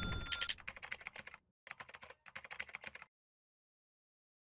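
Keyboard-typing sound effect: a short chime at the start, then three quick runs of key clicks that stop about three seconds in.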